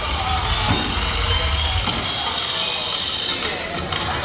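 Theatrical time-travel sound effect played with music over a PA system: a loud, steady noisy wash over a deep low hum, with a couple of swooping sounds, marking the show's jump back in time.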